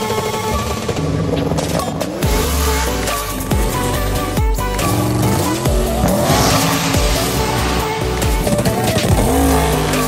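Drag race cars running down the strip under loud background music, their engines rising and falling in pitch several times.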